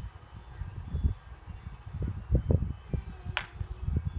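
Sparring with training axes and knives: repeated low footfall thumps on grass, and one sharp clack of the weapons striking about three seconds in. Faint short high tinkling tones sound in the background.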